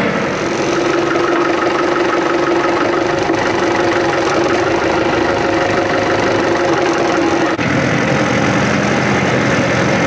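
Tractor engine running, heard close up, with a steady hum held high in its note that breaks off abruptly about three-quarters of the way through, where the engine sound shifts.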